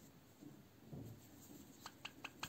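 Near silence, with faint rubbing of a needle and thread drawn through fabric and a small click near the end as hands work needle lace.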